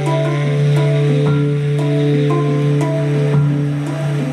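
Tenor saxophone and a nine-note hang drum improvising together in D minor, modal jazz style. A low note is held steadily throughout, while higher ringing notes change above it every half second or so.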